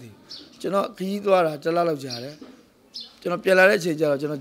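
A man talking in Burmese, in two phrases separated by a short pause.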